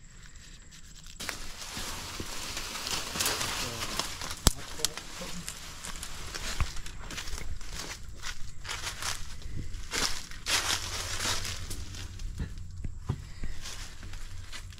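Footsteps pushing through tall weeds, brush and dry leaf litter: a continuous rustling and crackling of plants against legs and camera, with a couple of sharp twig snaps.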